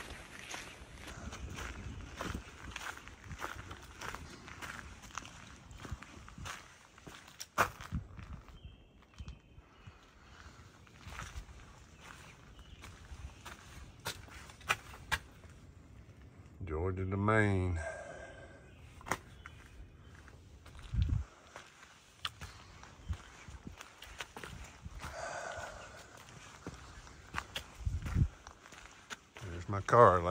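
Footsteps of a hiker walking steadily on a dirt path strewn with dead leaves. About 17 seconds in, a short wavering hum stands out as the loudest sound.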